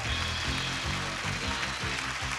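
Upbeat game-show theme music with a steady beat.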